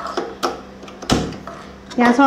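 A single sharp knock about a second in, with a few fainter clicks before it, over a faint steady hum.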